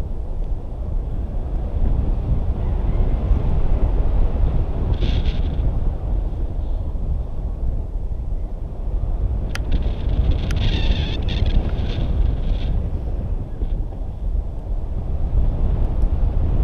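Wind rushing over the microphone of a camera carried through the air on a tandem paraglider flight: a steady loud rumble, with brief hissy gusts and two sharp clicks about ten seconds in.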